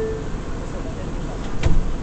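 Inside an R179 subway car running on the J line: a steady rumble of wheels and running gear, with one sharp knock about a second and a half in.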